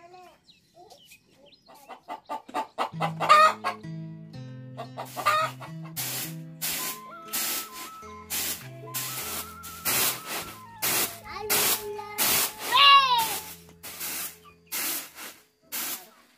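A rooster crowing a few times, short crows about three and five seconds in and a longer one near thirteen seconds, over background music with a stepping bass line and a steady drum beat that comes in about six seconds in.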